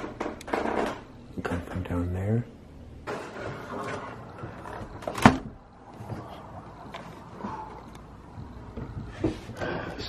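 Indistinct voices with footsteps and knocks on wooden stairs and attic floorboards, and one sharp knock just after five seconds in.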